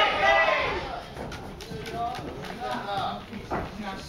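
Spectators' voices shouting in a reverberant hall, loud at first and fading after about half a second, with quieter voices and a few scattered dull thuds later on.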